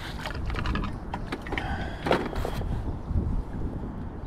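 Close-up handling noise: a run of small clicks, ticks and rustles as hands work a pole-fishing rig and hook, with one brief squeak about two seconds in.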